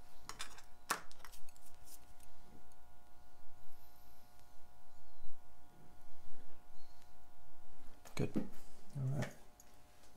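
Steel tweezers clicking against a Seiko 6106 automatic watch movement and its metal holder, two sharp clicks in the first second and then lighter handling. A couple of short murmured voice sounds near the end.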